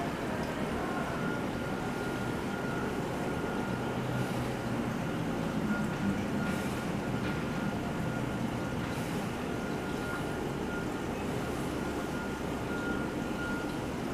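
Portable butane cassette stove burner running steadily under a metal rod, a continuous flame hiss and roar, with a faint thin high tone coming and going.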